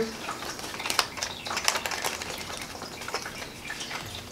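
Rustling and light, irregular crackles of fanfold thermal label paper being handled and pushed into a label printer's feed slot.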